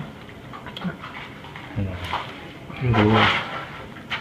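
Quiet room noise with two short murmured voice sounds, one about two seconds in and a longer one about three seconds in.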